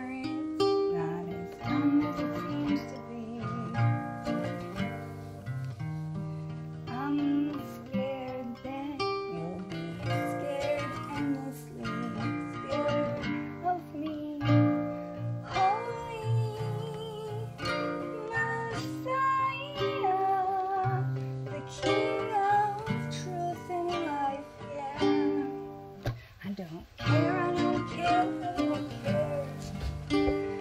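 Acoustic guitar played with plucked chords, joined about halfway through by a woman's voice singing a wavering wordless melody.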